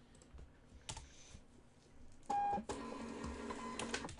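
Computer keyboard keys clicking in scattered strokes, then, a little over two seconds in, a short loud beep followed by a steady buzzing tone that stops just before the end.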